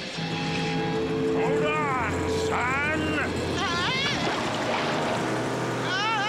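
Cartoon motorboat engine running steadily as the boat speeds off. A series of rising-and-falling warbling, voice-like sounds comes in over it from about a second and a half in.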